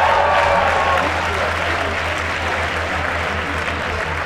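Large crowd applauding, loudest at the start and slowly dying down.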